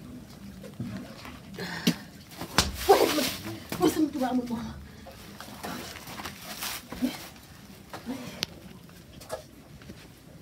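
A person's voice crying out in drawn, falling-pitched moans, loudest from about two and a half to four and a half seconds in, with a few sharp knocks near the start of that stretch.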